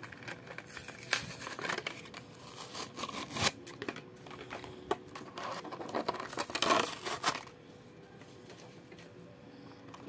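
Plastic blister and cardboard backing card of a Hot Wheels package being crinkled and torn open by hand: irregular crackling and ripping, busiest about seven seconds in, then quieter for the last couple of seconds.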